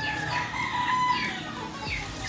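Gamecocks (fighting roosters) crowing, long drawn-out calls held on a wavering pitch.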